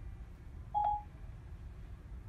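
A single short electronic beep about a second in, from the car's speakers: Siri on Apple CarPlay signalling that it has finished listening to a spoken question. Faint low room rumble underneath.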